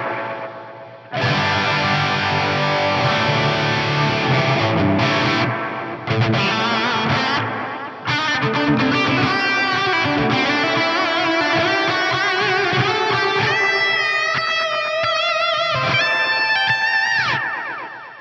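Distorted electric guitar lead played through Mesa Mark IV amp models on an Axe-Fx III, drenched in two tape-style multitap delays: intense shorter Space Echo–style repeats layered with big, sweeping, diffused long delays. The playing starts about a second in, and wavering echo trails die away near the end.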